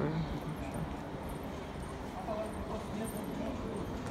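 Footsteps on a stone courtyard floor with faint, distant chatter of other people.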